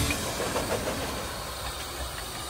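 Narrow-gauge steam tank locomotive running past at close range: a steady mechanical rumble and hiss with no clear beat.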